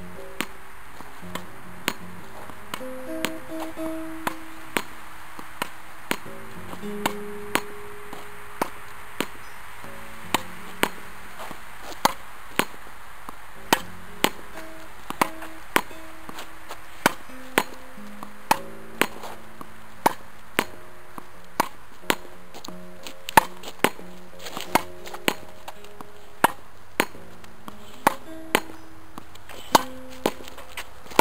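Tennis ball repeatedly struck by racket strings and rebounding off a practice wall: a run of sharp pops, about one to two a second, growing louder from about ten seconds in. Soft background music with held low notes plays underneath.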